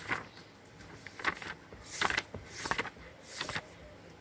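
Pages of a paper book being turned one after another: about five short rustles, roughly one a second.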